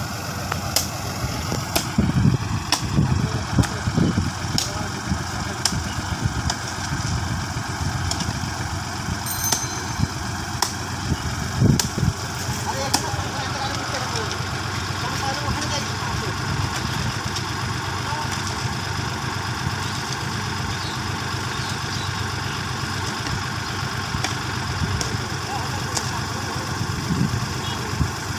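Sonalika tractor's diesel engine idling steadily while the loaded tractor sits bogged in mud, with scattered short sharp knocks.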